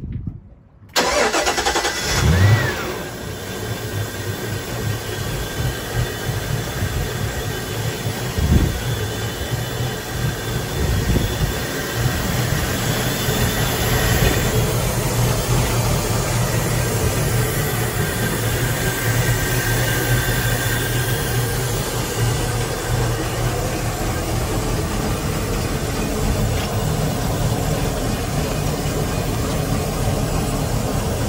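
Volvo Penta 8.1L marine V8 starting from cold. It catches suddenly about a second in, revs up briefly, then settles into a steady idle.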